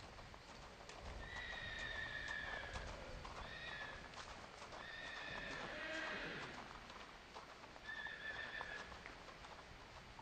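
Spotted Saddle Horse's hooves stepping on gravel at a walk under a rider. Four high, drawn-out calls sound over the hoofbeats, the longest about a second and a half.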